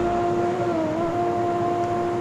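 A steady hum in the pause: a low tone with a second tone an octave above it, dipping slightly in pitch about a second in.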